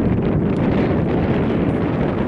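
Wind buffeting the camera microphone: a loud, steady low rumble.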